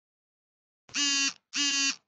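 Two electronic beeps, each about half a second long at one steady pitch, one right after the other starting about a second in.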